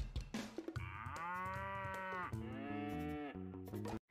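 Short electric guitar sting over drums: a few quick drum hits, then two long held notes that bend in pitch as they start and fall away at the end.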